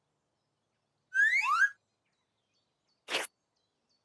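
Cartoon sound effects: two short rising chirps a little over a second in, then a single brief puff of hiss near three seconds, the cloud's failed attempt to rain.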